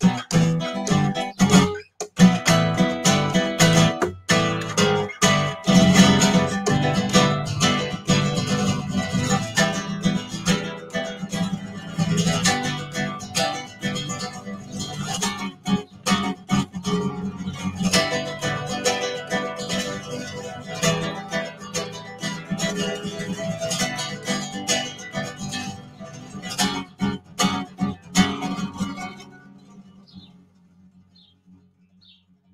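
Solo classical guitar played fingerstyle: busy plucked runs punctuated by sharp chord strokes, with abrupt stops in the first couple of seconds. The playing ends about a second before the end.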